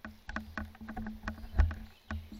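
Footsteps crunching and rustling through dry leaves and pine straw, a quick irregular crackle over a low handling rumble from the camera being moved, with a heavier thump about one and a half seconds in.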